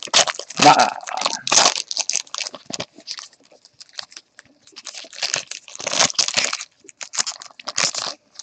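Plastic trading-card pack wrapper crinkling and crackling in irregular bursts as it is handled and torn open.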